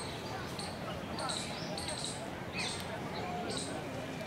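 Outdoor wildlife ambience: short high chirps repeating irregularly, about every half second, over a steady background hiss.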